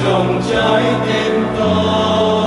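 Mixed choir of women's and men's voices singing a Vietnamese Catholic hymn in harmony, holding sustained chords that move to new notes twice.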